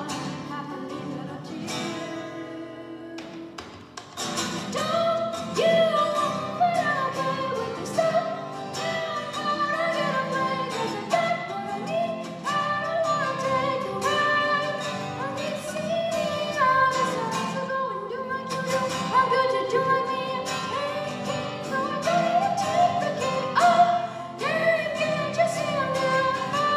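Live singing with two acoustic guitars strumming. The music thins to a quiet stretch about two seconds in and comes back in full about four seconds in.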